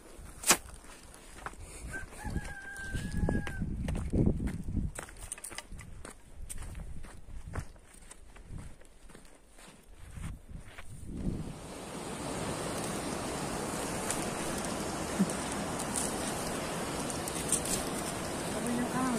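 A rooster crows once, a single held call about two seconds in, over footsteps and knocks on a stony path. From about eleven seconds in, a steady rushing noise takes over.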